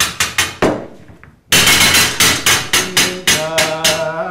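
Wayang kulit dalang's rhythmic knocking: sharp knocks about four a second that break off for a moment about a second in, then resume. A sustained chanted voice runs underneath.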